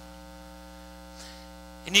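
Steady electrical mains hum, a low buzz with a ladder of higher overtones, from the stage's amplified sound system.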